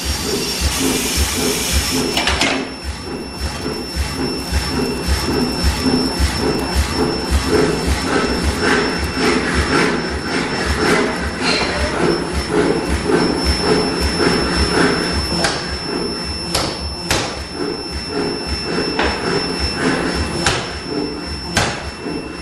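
Forge-shop machinery: a medium-frequency induction heater gives a steady high whine while a pneumatic forging hammer runs with a quick rhythmic pounding. Several sharp, hard hammer strikes ring out in the second half.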